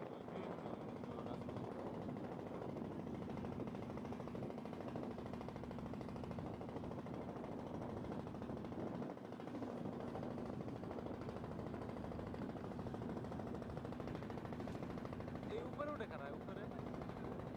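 A boat's engine running steadily with a fast, even chugging and a low hum, dipping briefly about nine seconds in.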